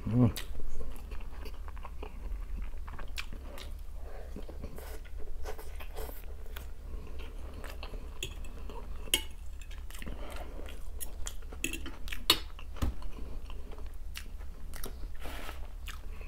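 Close-up chewing of a home-made meat cutlet and fried potato, with scattered sharp clicks of a fork against the plate.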